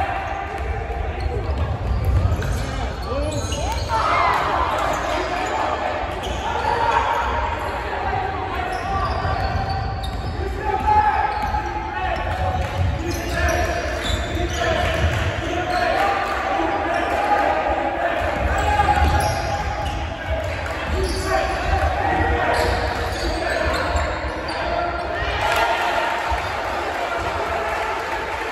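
Basketball being dribbled on a hardwood gym floor during live play, with players' and spectators' voices calling out, all echoing in a large gymnasium.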